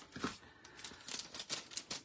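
Small clear plastic bag being handled, faint crinkling and crackling as tiny paper die cuts are taken out of it.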